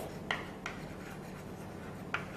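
Chalk writing on a chalkboard: two short taps and scratches of the chalk in the first second, then a faint steady hum.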